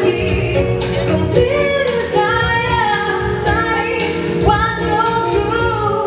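A female vocalist singing into a microphone over jazz-rock accompaniment, her voice sliding between held notes above a steady bass and regular drum strokes.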